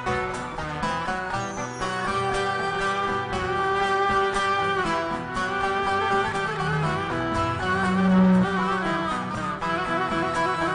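Live folk band playing an instrumental introduction: violin and bağlama (long-necked saz) over a steady beat.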